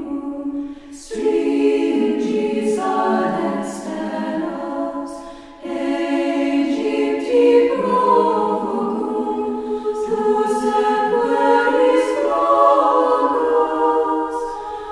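Choir singing in harmony, several voice parts at once, with short breaks between phrases about a second in and again near six seconds in.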